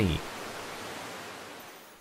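Rushing water of a waterfall, a steady hiss that fades out gradually toward the end.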